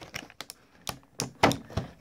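A run of uneven, sharp plastic clicks and taps as a small toy wrestling-belt accessory is worked loose by hand.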